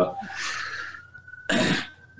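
A police siren on the road outside wailing as one thin tone that slowly rises and falls. A single cough about a second and a half in is the loudest sound.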